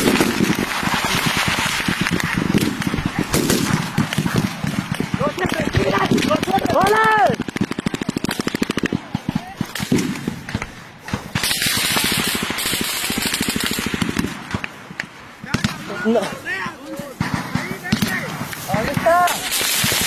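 Rapid gunfire cracking in close, irregular bursts, mixed with rustling and handling noise as the microphone moves through grass, and short shouted voices near the middle and toward the end.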